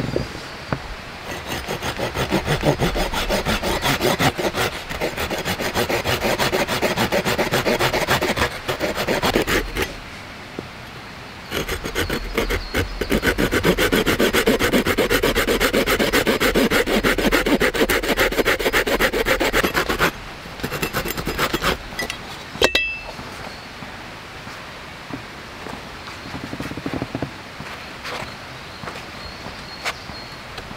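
Hand saw cutting through a thin wooden branch in steady back-and-forth strokes, in two long runs with a short pause between. A single sharp click with a brief ring comes a couple of seconds after the sawing stops.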